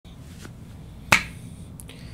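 A single sharp click a little past a second in, with a fainter tick before it, over a steady low room hum.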